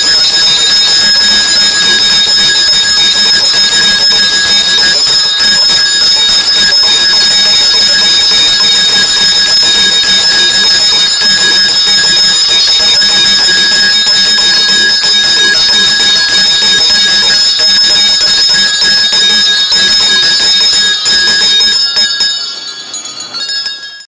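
A large audience ringing hand bells all at once, a loud, continuous, dense jangle of many bells that dies away near the end.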